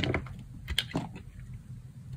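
Knife slicing through a bar of dry soap, crisp and crunchy: three cuts, one at the start and two close together just before the one-second mark.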